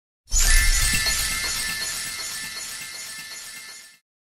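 Magic-sparkle logo sound effect: a low hit with a bright, glittering shimmer on top, starting suddenly and fading out slowly over about three and a half seconds.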